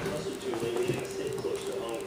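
Movie trailer soundtrack playing from a television's speaker: a sustained, slightly wavering low tone with faint voice-like sounds.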